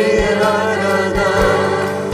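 A mixed choir and a male lead singer singing a Korean worship song in unison, over instrumental accompaniment.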